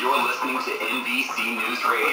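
A recorded NBC News Radio broadcast playing back: a voice that sounds thin, with almost no bass.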